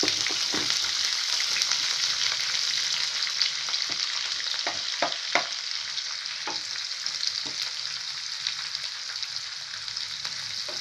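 Freshly added chopped onions sizzling in hot oil in a non-stick kadhai. The sizzle is strongest at first and eases a little later on. A wooden spatula stirring them knocks against the pan in a few sharp clicks around the middle.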